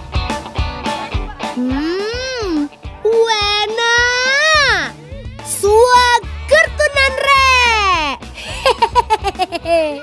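Children's drawn-out, wordless vocal exclamations, their voices sliding up and down in pitch, as they taste the food, over background music.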